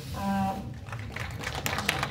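Audience clapping: scattered hand claps start a little under a second in, after a brief spoken word, and thicken into applause.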